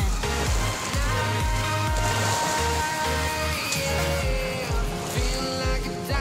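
Background music with a steady low beat, about two beats a second, under held tones.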